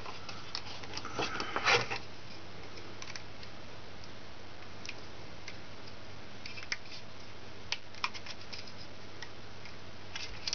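Small plastic clicks and ticks of a Rainbow Loom and its rubber bands being handled, with a brief cluster of clicks about a second and a half in and a few single ticks later, over a steady low room hiss.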